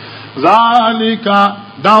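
A man reciting Quranic Arabic in a melodic, chanted style, holding long steady notes; the recitation begins about half a second in.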